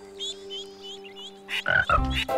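Cartoon frog croaking, loudest from about a second and a half in, over soft background music with a few short high chirps in the first second.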